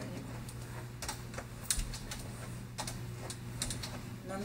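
Light, irregular clicks and taps of someone walking in a leg cast, from footfalls and crutches, over a steady low hum.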